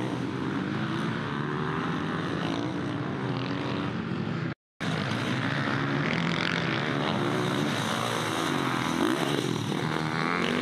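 Several off-road racing dirt bikes revving as they ride the track, their engine notes rising and falling and overlapping. The sound cuts out completely for a moment just before halfway, then the engines carry on.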